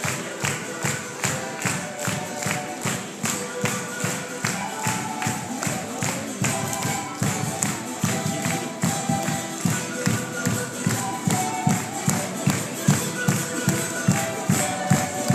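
Live Latin American street-band music: a fast, steady drum beat under a melody line, played by performers marching in a parade.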